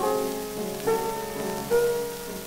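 Grand piano playing alone between the baritone's phrases, with notes struck at the start, about a second in and near the end, from an old shellac record of about 1928 with surface hiss and crackle.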